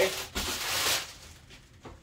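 Clear plastic packaging wrap rustling as it is handled, for about the first second, then dying away, with a light click near the end.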